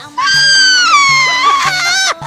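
A woman's long, high-pitched excited scream that slides down in pitch, over hip-hop music with a steady bass beat.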